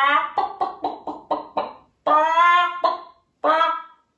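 A man imitating a hen's clucking with his voice: a rising call, then a quick run of short clucks, about four a second, then two longer drawn-out calls.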